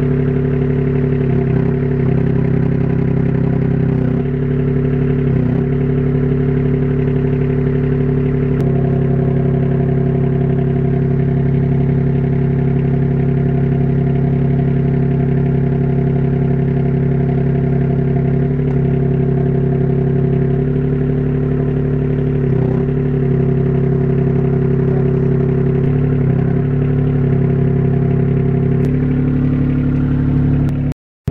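Forklift engine running steadily under load as it lifts a heavy boat hull, its note shifting slightly every few seconds and changing about nine seconds in.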